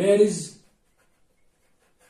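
A man's voice speaking Arabic for about the first half second, then faint strokes of a marker writing on a whiteboard.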